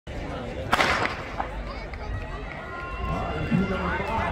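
A single starter's gun shot about three-quarters of a second in, the loudest sound here, with a short ring after it, signalling the start of a 400 m race. Spectators' voices follow.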